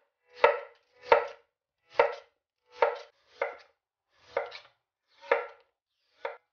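A chef's knife slicing raw potato and lotus root into rounds on an end-grain wooden cutting board. Seven slow, separate cuts come a little under one a second, each a short swell that ends sharply as the blade meets the board.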